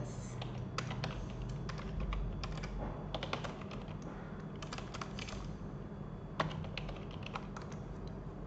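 Typing on a computer keyboard: irregular runs of key clicks with short pauses between them, over a faint steady low hum.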